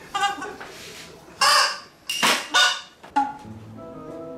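Multi-horn mouthpiece party horns ('super mouse horn') honking in about five short blasts, the loudest in the middle.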